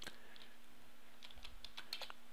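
Faint computer keyboard keystrokes: several separate, light key clicks spaced unevenly, as a line of text is edited.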